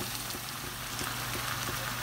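Sliced onions and spices simmering in oily liquid in a frying pan: a steady sizzling hiss with faint scattered pops, over a steady low hum.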